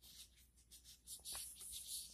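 Faint, short, scratchy strokes from a gloved hand rubbing the skin of a forearm below a tourniquet to bring up a vein for a blood draw.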